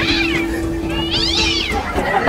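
Domestic cat meowing twice: a short meow at the start, then a longer, higher one about a second in.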